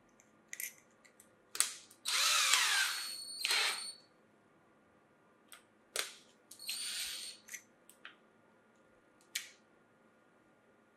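Cordless drill-driver with a twist bit in its keyless chuck: sharp clicks of the chuck and bit being handled, and the motor run in three short bursts, about two seconds in, around three and a half seconds, and near seven seconds, its pitch falling as it winds down after the first.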